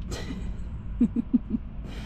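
A woman giggling briefly, four short laughs about a second in, inside a car with a steady low rumble beneath.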